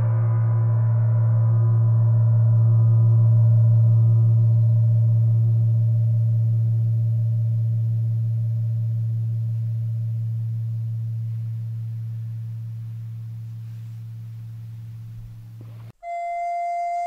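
A large gong, struck just before, ringing out with a deep low hum and many overtones. It swells slightly over the first few seconds, then slowly fades as the higher overtones die away first, and is cut off suddenly at the end.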